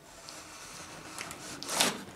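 Large Rambo III replica knife slitting packing tape along the seam of a cardboard box: the blade drags through tape and cardboard with a steady scrape, swelling to a louder rasp near the end.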